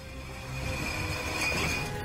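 Film soundtrack of music and rumbling effects swelling steadily louder, with a sustained high ringing tone on top, then breaking off abruptly at the end.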